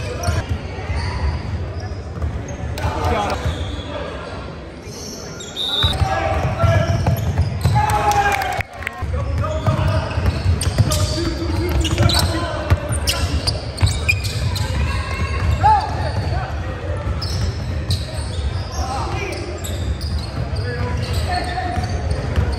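A basketball dribbled on a hardwood gym floor, with repeated bounces ringing in a large hall, over the voices of players and spectators calling out.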